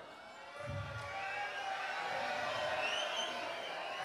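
Theatre audience: many voices murmuring and chattering together, swelling about a second in and then holding steady.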